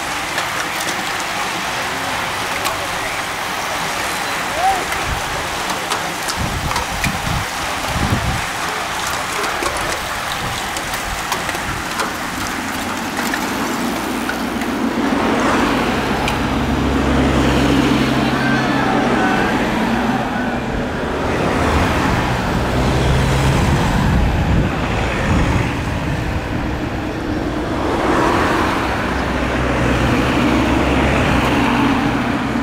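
A bunch of racing bicycles passing close on tarmac, with spectators' voices. From about halfway, the steady low hum of the following team cars' engines takes over as they crawl up the climb behind the riders.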